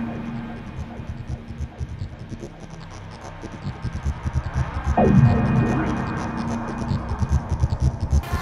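Background soundtrack of a low humming, throbbing drone with fast low pulses. About five seconds in, a sudden hit sounds, falling in pitch, over a held low note.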